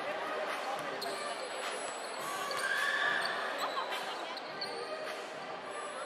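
Basketball being dribbled on a hardwood court, with a few short bounces heard over a steady din of crowd voices and shouts in a large gym.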